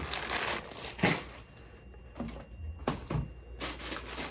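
Plastic packaging crinkling and rustling as it is handled and moved, with a few light knocks.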